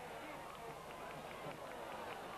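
Faint, steady background noise of a televised football match: stadium ambience under an even hiss, with no commentary.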